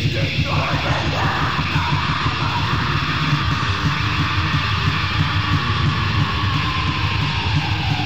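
Melodic doom/death metal band playing: distorted guitars over fast, dense drumming, with a long held note that slowly falls in pitch from about two seconds in.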